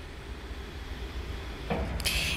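Cover of an R8 CNC rebar bending machine lifting open, heard as a steady low hum with a faint even hiss and no distinct clunks.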